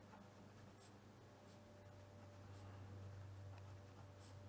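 Faint scratching of a fine-tip pen writing on paper, in a few short strokes, over a low steady hum.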